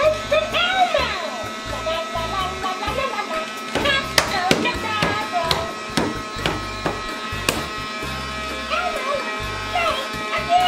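Giggle and Bubble Elmo bubble-machine toy running: a tune and a voice from its small speaker over the steady buzz of its bubble-blowing fan motor, with a couple of sharp clicks.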